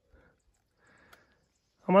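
Near quiet with a couple of faint, short rustles, then a man's voice begins right at the end.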